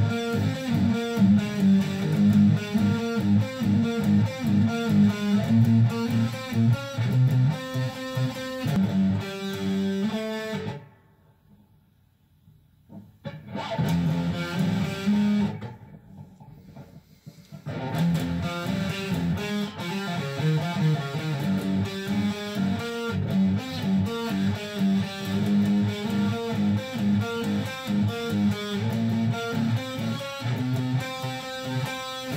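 Electric guitar with distortion playing a fast-picked riff that is being practised. It stops for a few seconds about a third of the way in, starts, breaks off again briefly, then carries on.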